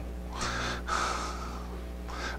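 A man's audible breath into a close microphone: a long drawn breath, briefly broken near the middle, over a steady low electrical hum.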